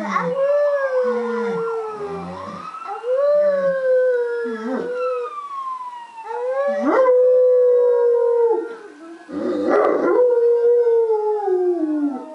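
Great Pyrenees howling in answer to a fire-truck siren on the TV: about four long, drawn-out howls, each dropping in pitch as it ends.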